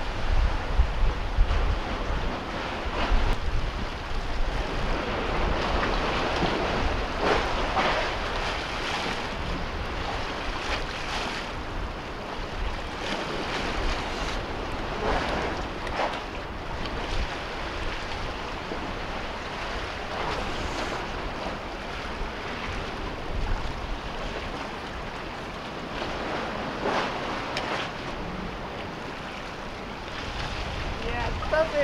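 Small waves lapping and splashing against concrete tetrapods, with a louder splash every few seconds, and wind rumbling on the microphone.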